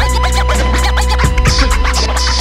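Instrumental hip-hop beat with a heavy sustained bass, regular hi-hat ticks and DJ-style scratch sweeps, without vocals.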